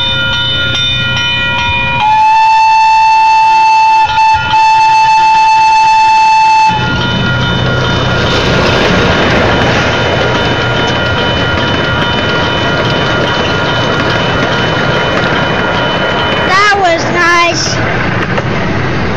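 Railroad crossing signal bell ringing steadily while a miniature park train passes. About two seconds in, the train's whistle blows loud and held for several seconds with a brief break. The cars then rumble over the crossing under the bell.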